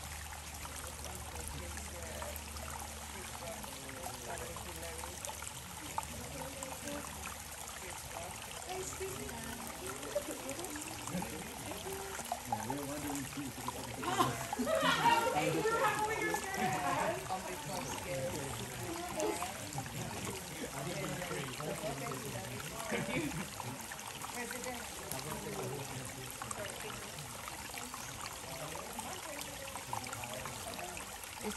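Water trickling and dripping down a rock face from a waterfall running very low, with people's voices over it, loudest about halfway through.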